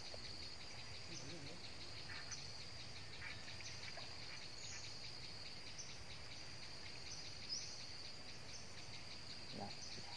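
Insects trilling steadily in the waterside vegetation: one continuous high-pitched buzzing trill with a fast, even pulse, with a few short high chirps over it.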